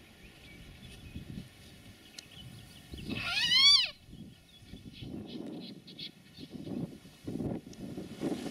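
A brown hare caught in a snare screaming once, about three seconds in: a loud, wavering distress cry lasting under a second. Rustling in long grass follows as the animal is handled.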